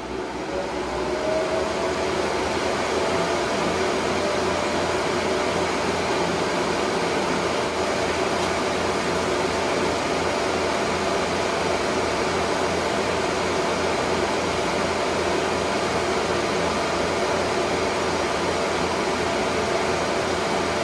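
A bank of high-speed PC cooling fans on a car's engine lid spooling up over the first couple of seconds, a whine climbing in pitch. They then run steadily with a loud rush of air and a steady whine.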